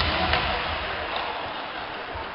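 Ice hockey faceoff: two sharp clacks of sticks on the ice and puck about a third of a second apart, over the steady noise of the arena crowd.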